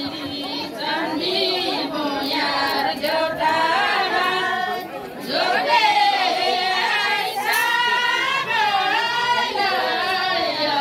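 A group of women singing a Nepali song together in unison, the melody gliding up and down, with a brief dip about five seconds in.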